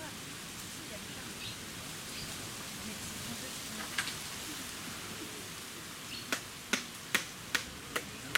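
Steady background hiss. A single sharp knock comes about four seconds in, then from about six seconds in a regular series of sharp knocks, about two and a half a second, as a blade strikes a hand-held coconut to crack it open.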